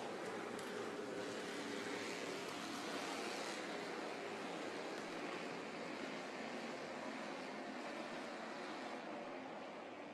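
Bandolero race cars running in a pack around the oval, heard as a steady, noisy drone with a faint hum underneath.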